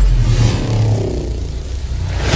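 Title-card sound effect: a sharp whooshing hit right at the start, then a loud, deep engine-like rumble, set between bursts of heavy rock theme music.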